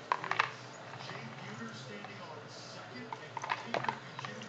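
Light metallic clicks and clinks as a tangled purse chain and its wrapping are worked loose by hand, bunched near the start and again near the end.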